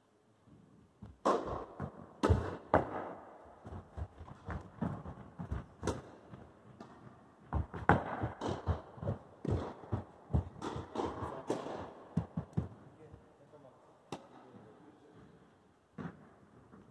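Tennis rally in an indoor hall: strings striking the ball, ball bouncing on the court, and quick footsteps, in two busy stretches with a short pause between them.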